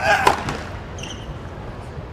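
A tennis serve: a short grunt and the sharp crack of the racket striking the ball right at the start, followed by another knock about half a second later. Faint squeaks are heard about a second in.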